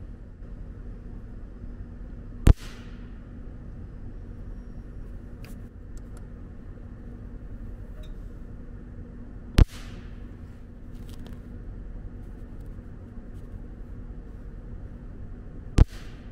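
Three sharp cracks, about seven and six seconds apart, the last just before the end: a capacitor discharge thermocouple attachment unit firing, each crack the arc that welds one type K thermocouple wire onto the steel base metal. A steady low hum runs underneath.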